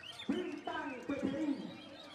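Caged songbirds, among them a white-rumped shama, singing with many quick high chirps and whistles. A few louder, lower and rounder notes come about a third of a second in and again around the middle.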